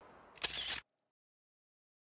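A camera shutter clicking once, a brief sharp sound about half a second in, then dead silence.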